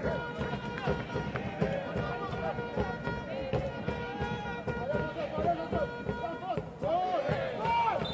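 Stadium sound at a football match: voices shouting again and again over steady held musical tones and repeated knocks, like fans' music and drumming in a sparse crowd.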